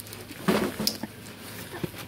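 Handling noise: a few brief rustles and knocks, the loudest about half a second in, as the phone is moved about and the rings in small plastic bags are passed over a box of foam packing peanuts.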